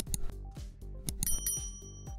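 A bright, high bell struck twice in quick succession about a second and a quarter in, then ringing out: the notification-bell sound of a subscribe-button animation. Background music with a steady beat plays underneath.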